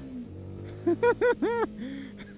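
CFMoto 300SS motorcycle's single-cylinder engine pulling away, freshly ECU-flashed but otherwise stock. Its climbing revs drop at a gear change right at the start, then it holds a steady note. About a second in, the rider laughs briefly over it.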